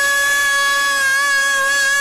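A girl's voice holding one long sung note in a Kannada devotional bhajan, the pitch steady with a slight waver.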